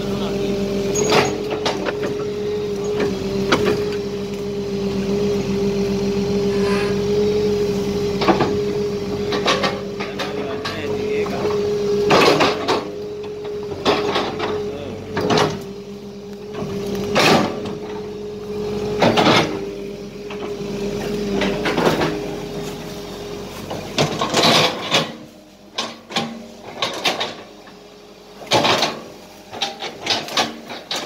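Crawler excavator running under load with a steady hum, and repeated sharp knocks while the bucket digs. The hum drops away about 23 seconds in, leaving quieter, scattered knocks.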